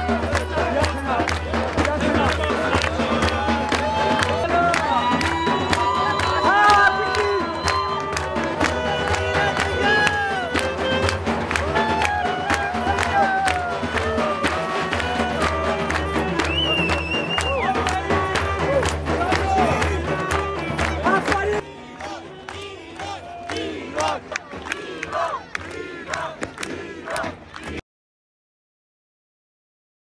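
Live clarinet and frame drum playing dance music amid a large crowd that claps, cheers and shouts. About three-quarters of the way through, the sound drops abruptly to quieter scattered crowd noise.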